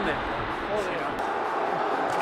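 Faint background chatter of several men's voices, with no one speaking close up.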